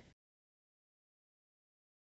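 Near silence: dead digital silence with no sound at all.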